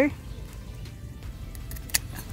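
Hand-held bypass pruners giving a single sharp click near the end, as the blades close on a tomato side shoot (sucker) to cut it off, over a low steady background.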